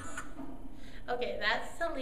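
A played-back song stops just after the start. About a second in, a woman's voice is heard briefly, rising and then falling in pitch.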